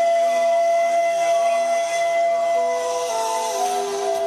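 Pan flute holding one long breathy note over a steady lower accompaniment, then moving through a few short notes near the end.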